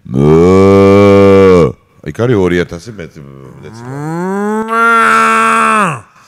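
Two long, very loud cow moos, the second rising in pitch before it holds and cuts off at the end.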